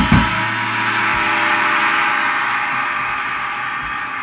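Drum kit: one hard hit at the start, then the cymbals ring on and slowly fade while the drumming pauses.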